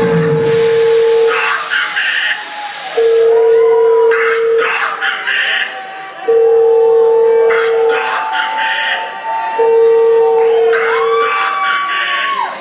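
Electronic dance music from a club PA in a breakdown: a held synth note that repeats about every three seconds, gliding synth lines and bursts of hiss, with the bass and drums dropped out.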